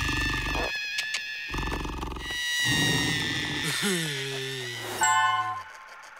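Cartoon soundtrack: music with wordless character vocal effects, two rough low growls in the first half and a drawn-out falling cry near the end.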